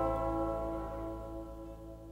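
Final chord of the song ringing out on guitars and fading away steadily.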